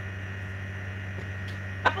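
Steady low electrical hum with a faint high-pitched tone above it, and a short click near the end.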